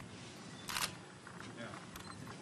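A single camera shutter click, short and crisp, about two-thirds of a second in, over low hall background noise.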